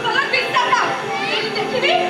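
Raised voices of actors speaking on stage.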